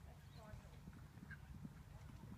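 Faint, distant hoofbeats of a pony on grass, with a faint far-off voice.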